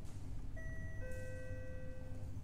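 Two held musical notes, the first entering about half a second in and a lower one about a second in, both steady in pitch, over a low steady hum.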